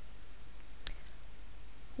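Two short, sharp clicks a fraction of a second apart, about a second in, over a low steady hum.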